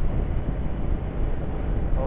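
Royal Enfield Interceptor 650 parallel-twin motorcycle cruising at about 50 mph: a steady low rumble of engine, road and wind, heard from the rider's seat.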